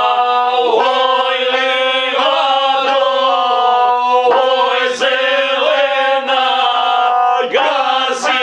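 Several men singing a traditional Serbian folk song together in long held phrases, accompanied by a gusle, a single-string bowed fiddle.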